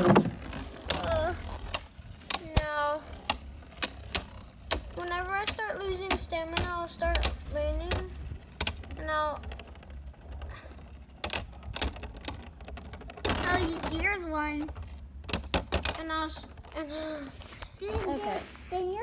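Beyblade spinning tops clashing in a plastic stadium: rapid, irregular sharp clicks and clacks as the tops strike each other and the stadium walls.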